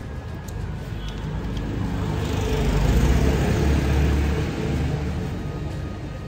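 A motor vehicle passing on the street: engine rumble and road noise swell to a peak about three to four seconds in, then fade.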